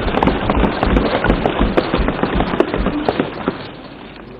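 Members of parliament thumping their desks in applause: a dense clatter of many overlapping blows that dies away toward the end.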